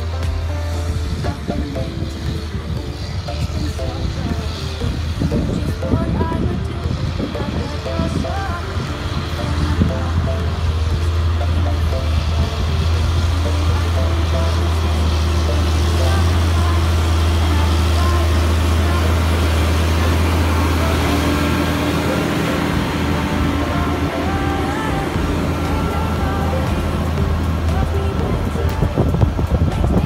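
A song with singing plays over the low, steady drone of a Challenger MT765C tracked tractor's diesel engine pulling a land leveller. The engine drone grows louder towards the middle as the tractor passes close, then eases.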